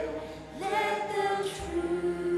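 A group of voices singing a worship song together in long held notes, with a brief dip before a new phrase begins about half a second in.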